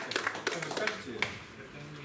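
Applause from a small audience tailing off: scattered claps thin out and stop a little over a second in, with a few voices under them.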